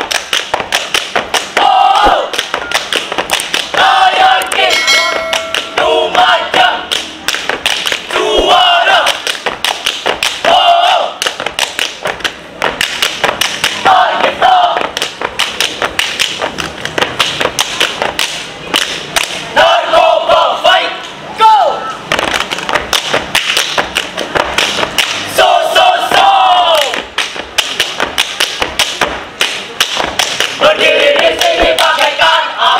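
A troop of boy scouts performing a yell routine: short shouted group calls every few seconds over a fast, steady beat of thumps.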